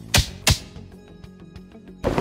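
Background music with two quick, sharp hit sound effects about a third of a second apart near the start. They are edit effects that go with a character's quick glances left and right.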